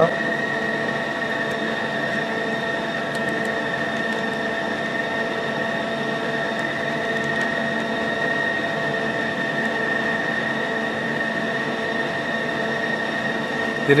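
Idle CNC lathe with its spindle stopped, running a steady hum with a high whine. A few faint keypad clicks stand out over it.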